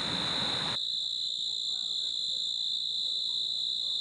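Crickets chirring at night: a steady high-pitched trill with a fainter, higher band above it. A broad hiss under it drops away under a second in.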